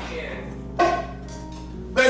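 Church band playing softly under the sermon: a held chord with one drum and cymbal hit about a second in.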